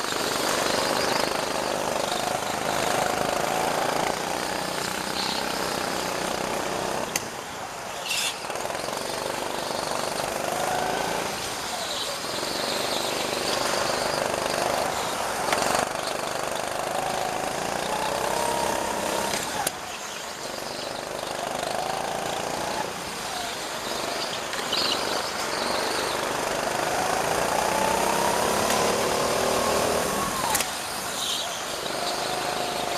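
Go-kart engine heard from on board during a lap: its pitch climbs steadily as it accelerates and drops sharply each time the throttle is lifted for a corner, several times over.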